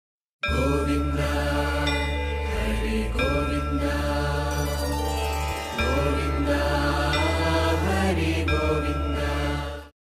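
Devotional intro music: a chanted Hindu mantra sung over a steady low drone. It starts about half a second in and fades out just before the end.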